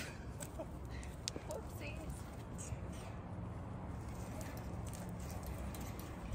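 Faint outdoor ambience: a steady low rumble with a few short bird chirps and light clicks scattered through it.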